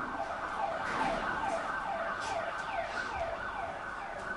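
A siren-like tone that slides down in pitch over and over, about twice a second, below the level of the lecturer's voice.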